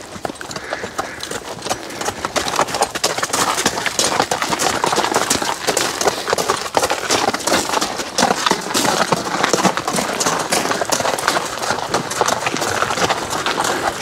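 Hooves of a team of two draft horses, a Suffolk Punch and a Percheron, walking on a wet gravel drive: a steady, irregular crunching clip-clop of many overlapping steps.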